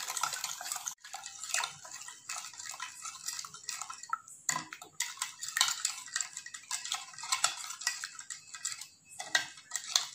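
Metal spoon clinking and scraping against a ceramic bowl while beating egg with milk, in quick, irregular strokes.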